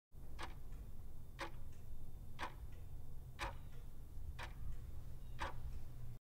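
Clock-tick countdown sound effect: six sharp ticks, one a second, each followed by a fainter click, over a steady low hum.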